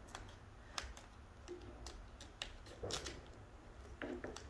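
Duct tape being wound by hand around a spear's rubber head and rattan shaft: faint crinkling with scattered small clicks.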